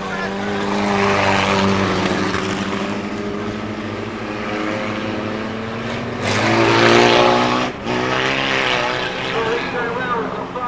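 Several small-engined mini stock cars racing together round a tight oval, their engines running hard with tyre and road noise. About six seconds in the engines get louder and rise in pitch, then dip briefly just before the eighth second.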